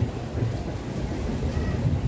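Wind buffeting the microphone in an uneven low rumble, with faint crowd chatter beneath.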